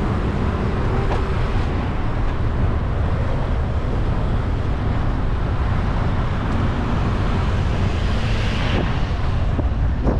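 Wind rumbling on a bike-mounted camera's microphone while cycling on a city street, mixed with tyre and road noise. A brighter hiss builds near the end.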